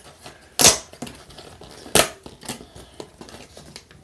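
Hands handling small plastic toy pieces and their packaging: a short rustle about half a second in, a sharp click near two seconds, then a few lighter clicks.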